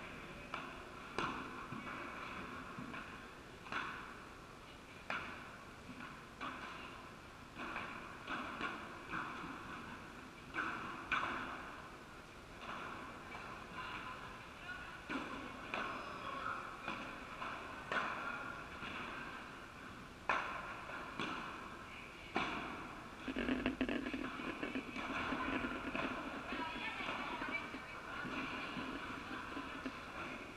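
Padel balls being struck by rackets and bouncing: sharp, irregular pops every second or two, each with a short echo in a large indoor hall, over indistinct voices.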